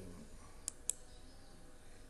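Computer mouse button clicking: two short, sharp clicks about a fifth of a second apart, a click on an on-screen button.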